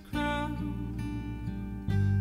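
Acoustic guitar strummed in a song: a chord struck at the start rings on, and a fresh strum comes near the end.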